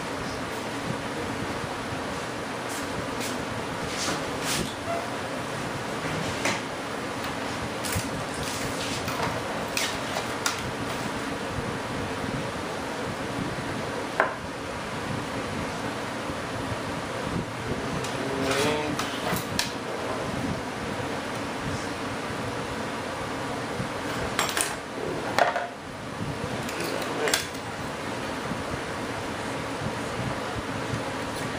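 Kevlar composite fuel tank shells and tools being handled on a workbench: light knocks and clatter come now and then, with a sharp knock about halfway through and a busier cluster of clatter near the end. A steady hum runs underneath throughout.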